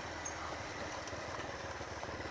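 Dirt bike engine running at low speed. It gives a steady, fairly quiet engine note with quick, even firing pulses.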